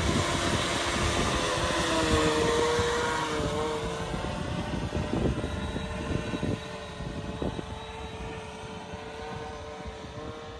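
Titan Cobra VTOL drone's electric lift motors and propellers whirring with a steady whine as it transitions from hover to forward flight, fading as it flies away.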